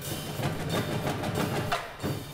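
Marching band percussion playing a driving groove of sharp drum hits over a held low note.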